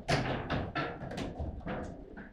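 Table football in play: an irregular run of sharp plastic knocks, about six or seven in two seconds, the loudest right at the start. These are the ball being struck by the plastic figures and the rods knocking against the table.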